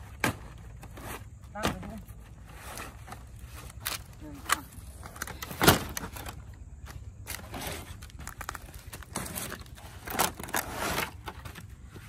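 Thin, dry wood veneer sheets clattering and knocking as they are picked up off the ground and stacked by hand, in irregular clacks with one sharp loud one a little before halfway.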